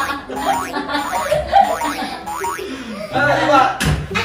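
Voices laughing and squealing, with one sharp thump near the end.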